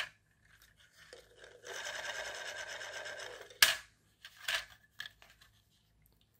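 A rough scraping sound lasting about two and a half seconds, then a sharp knock and a few lighter knocks: a bamboo skewer axle and CD wheels being worked onto a 3D-printed plastic car frame.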